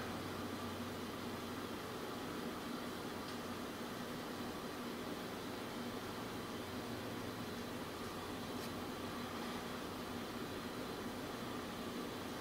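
Steady room tone: an even background hiss with a faint low hum.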